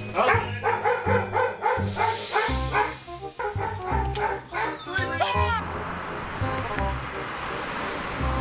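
A dog barking quickly and repeatedly, about four barks a second, over background music with a steady bass beat. The barking stops about five and a half seconds in, leaving only the music.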